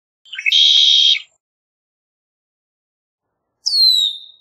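Red-winged blackbird singing one song: a few short introductory notes, then a trill lasting about half a second. Near the end, a single high whistled note sliding down in pitch.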